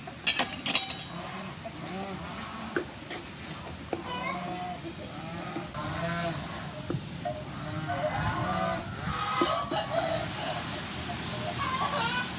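Diced tomatoes frying and sizzling in a frying pan, stirred and scraped with a wooden spatula. A few sharp clacks of the utensil on the pan come about half a second in. Pitched calls are heard in the background several times.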